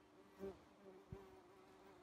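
A bee buzzing in flight, a faint, steady hum that wavers slightly in pitch and swells briefly about half a second in.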